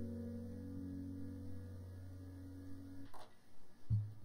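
The last chord of a guitar piece ringing out and fading slowly, cutting off about three seconds in, followed by a few faint clicks.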